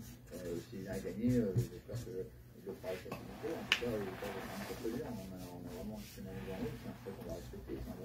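Quiet, low-level speech, softer than the surrounding talk, with a single sharp click a little under four seconds in.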